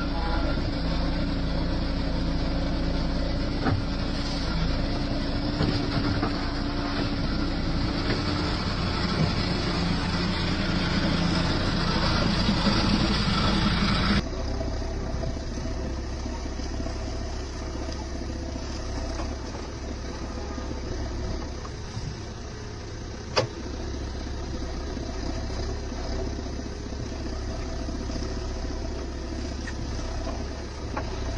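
JCB 3DX backhoe loader's diesel engine running under digging load, close and loud as from inside the cab, its note rising somewhat as the arm works. About halfway through the sound switches abruptly to a quieter, more distant engine sound of the machine working, with a single sharp knock about two-thirds of the way in.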